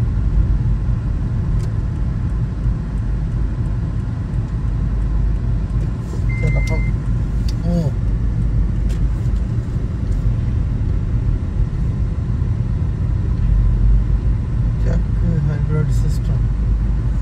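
BNSF freight train boxcars rolling past across a grade crossing, heard from inside a waiting car as a steady low rumble, with a short high beep about six seconds in.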